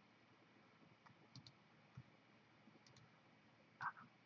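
Near silence with a few faint computer mouse clicks spread through it, the loudest one near the end.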